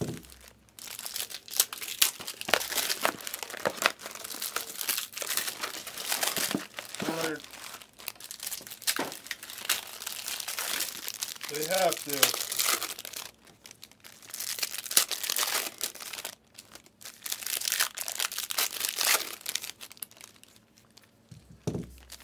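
Trading-card pack wrappers being crinkled and torn open by hand, a run of irregular crackly rustles with short pauses.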